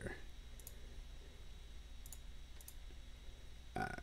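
A few faint, sharp computer mouse clicks, spaced irregularly, over a low steady hum.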